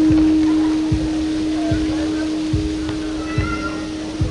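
Live band music from a stage: one long held note over a slow, steady low drum beat of about one thump every 0.8 seconds.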